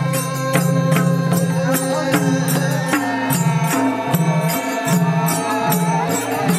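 A group of men chanting a traditional song in unison, with low held notes that step between pitches, over madal hand drums beaten in a steady rhythm of about two strokes a second.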